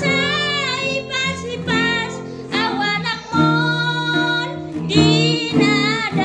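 A woman singing a slow song, holding long notes with a wavering vibrato, accompanied by picked acoustic guitar.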